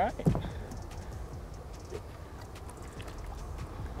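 Faint water sloshing and lapping at the side of a boat, with a few light knocks, as a large fish is held in the water beside the hull.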